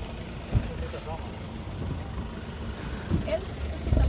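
Car engine idling, a steady low rumble, with a short low thump near the end.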